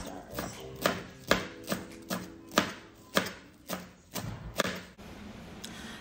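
Kitchen knife chopping fresh cilantro on a cutting board with steady strokes, about two cuts a second, stopping about five seconds in. Faint background music runs underneath.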